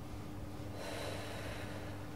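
A woman exhaling cigarette smoke: one breath out lasting about a second, starting near the middle.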